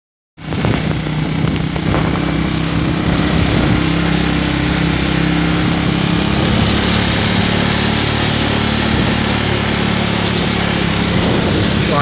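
Motocross motorcycle engine running at a steady, even pace while riding along a gravel road, with a broad rush of wind and road noise. The sound starts abruptly just under half a second in.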